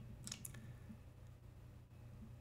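Near silence over a low steady hum, with two or three faint clicks from a computer mouse about a quarter to half a second in as the page is scrolled.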